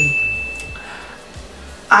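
One high, clear electronic ding, an editing sound effect, that starts sharply and fades away over about a second and a half.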